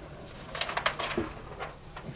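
Light clicks from a whiteboard marker being handled, a quick run of four or five about half a second in, followed by a short low note.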